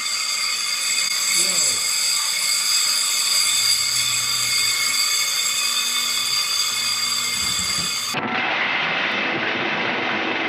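Replica Frankenstein laboratory machines running: a steady electrical buzz with several high whining tones and one brief falling whine early on. About eight seconds in it cuts abruptly to a duller rushing noise.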